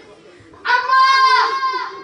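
A girl's high voice through a microphone, crying out one drawn-out note of about a second after a short pause, its pitch dropping away at the end.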